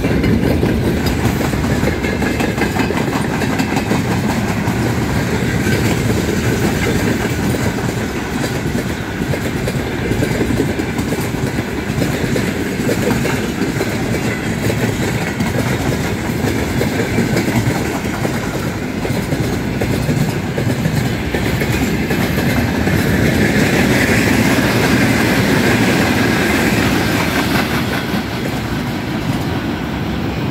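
Freight train wagons (grain hoppers, open gondolas and tank cars) rolling past close by at speed: a steady, loud rumble of steel wheels on rail, with quick rhythmic clacks as the wheelsets cross rail joints.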